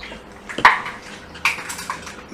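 Light handling clicks and scrapes as an iPad Pro's replacement screen and its small flex cable are worked into place over the opened tablet: a sharp click about two-thirds of a second in, and a smaller scrape about a second later.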